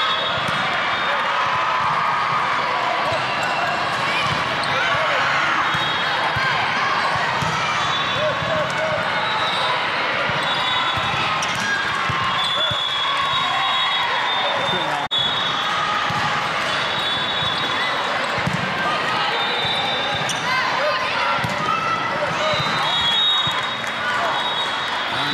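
Busy sports-hall din during a volleyball match: many overlapping voices of players and spectators, with thuds of volleyballs being hit and bouncing, all echoing in a large gym.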